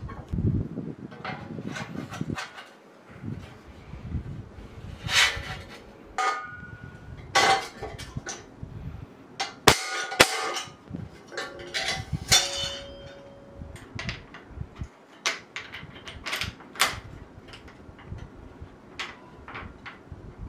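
Hands-on workshop sounds of bicycle parts being worked on: painter's tape rustling and ripping on a handlebar, then a string of knocks, clicks and clanks from handling the metal frame and seatpost, the sharpest two clicks about ten seconds in.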